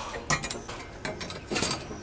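A welded steel-rod bracket rattling and scraping against a concrete wall as it is held up and positioned, in two short bursts: about a third of a second in and again near the end.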